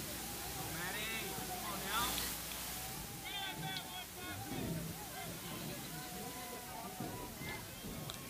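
Distant voices of players and spectators calling out across the field in scattered shouts, with a brief burst of noise about two seconds in.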